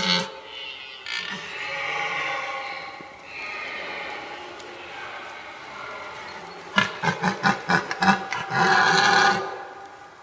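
Red deer stag roaring in the rut. Drawn-out roars run through the first six seconds. About seven seconds in comes a run of about eight short grunting calls, and then one loud long roar that stops a little after nine seconds.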